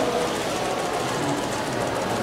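Many press camera shutters clicking rapidly and continuously in a dense, steady clatter as photographers shoot a posing figure, over a background of crowd noise.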